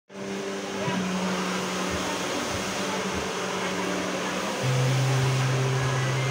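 Steady electric motor and fan hum with airy hiss, which shifts to a lower, louder hum about four and a half seconds in, with a few soft low bumps.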